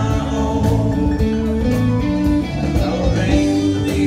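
Live band playing a Southern-rock song, with guitar over a steady drum beat.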